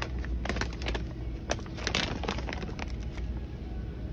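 Crinkling and clicking of a plastic dog-treat bag being taken off a pegboard hook and handled, loudest about two seconds in, over a low steady hum.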